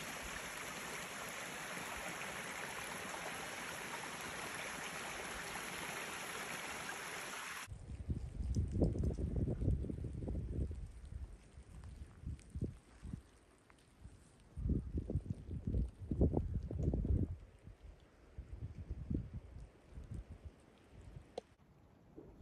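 A small stream running steadily. About eight seconds in it cuts off and gives way to irregular gusts of wind buffeting the microphone, with quieter lulls between them.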